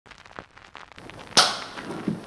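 Film clapperboard snapped shut once: a single sharp clack about one and a half seconds in, with a few faint clicks before it.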